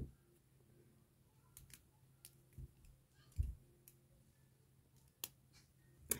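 Near silence with a few faint, scattered clicks and one soft low thump about three and a half seconds in: small handling noises from braiding a doll's hair and tying it off with a small elastic hair tie.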